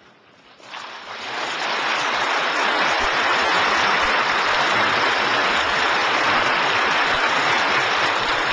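Audience applauding, starting about a second in and building within a second or so to steady, sustained clapping.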